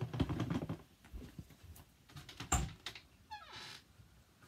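Footsteps and clothing rustle as a person gets up and walks across a small room, with a flurry of small clicks at first. There is one sharp knock about two and a half seconds in, then a short creak near the end as a wooden wardrobe door is pulled open.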